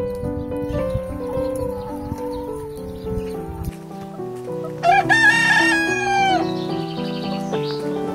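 A rooster crowing once, about five seconds in: a single call of about a second and a half that falls in pitch at its end, the loudest sound here. Piano music plays underneath.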